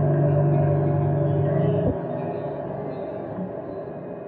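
Modular synthesizer music: a held low note with overtones that cuts off with a click about two seconds in, leaving quieter tones that fade.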